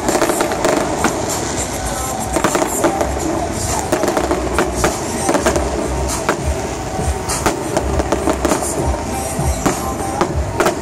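Electronically fired aerial fireworks display: shells bursting overhead in a rapid, irregular barrage of bangs and crackles, several reports a second, over a continuous rumble.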